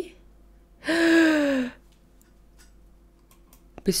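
A woman's breathy, drawn-out voiced exhalation, like an 'ahh' or sigh, falling in pitch and lasting about a second. A few faint ticks follow, and she starts speaking near the end.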